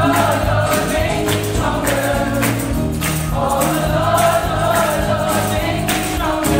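A large gospel choir of mixed voices singing together over instrumental accompaniment with a steady beat.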